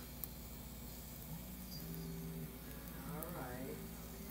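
Quiet room tone with a steady low hum; about three seconds in, a brief faint vocal sound, a murmur from the person.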